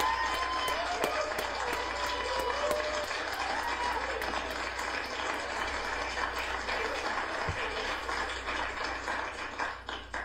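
TV courtroom studio audience applauding steadily, with a few voices calling out over it in the first few seconds, until the applause cuts off suddenly at the very end.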